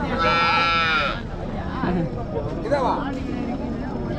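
A calf bawling once, a loud call about a second long near the start, over a background murmur of voices.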